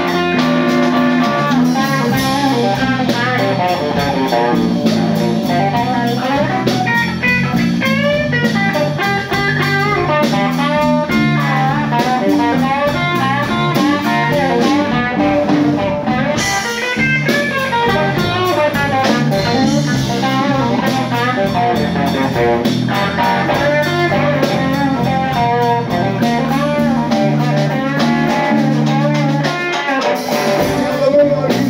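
Live instrumental jam by an electric guitar, bass and drum kit trio: the electric guitar plays moving single-note lines over a steady bass line and drums.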